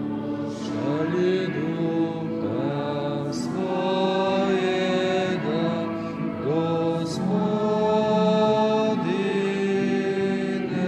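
Slow liturgical hymn sung in long held notes that slide up into each new note, over steady instrumental accompaniment.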